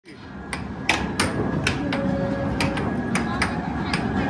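Puck and mallets on a Dynamo Fire Storm air hockey table clacking, a sharp crack every third to half second or so, over steady arcade background noise and voices.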